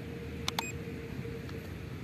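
Steady outdoor background noise of wind on the microphone, with a faint steady hum and one short sharp click about half a second in.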